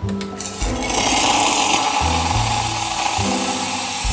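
Espresso machine steam wand frothing milk in a stainless steel pitcher: a loud, steady hiss that starts about half a second in.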